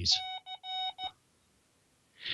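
Morse-code tone of the Hawaiian amateur radio beacon on a receiver, four keyed beeps, long and short, ending about a second in. The beacon is heard 2,500 miles away over a tropospheric duct.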